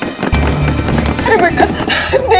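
Palms banging repeatedly on a louvered door, under background music with a steady deep bass. Shouting voices come in about a second in.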